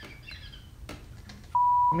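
A single steady, high-pitched beep of a television censor bleep, covering a swear word. It starts abruptly about one and a half seconds in and lasts about half a second, louder than everything before it, which is only faint low sound and one click.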